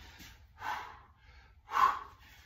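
A man breathing hard from exertion while swinging a kettlebell through repeated half snatches, deep into a long continuous set. Two sharp, forceful breaths come about a second apart, the second louder.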